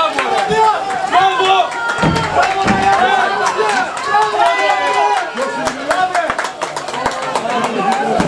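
Small crowd of football spectators shouting and cheering a goal, several voices overlapping with no pause, and scattered sharp clicks throughout.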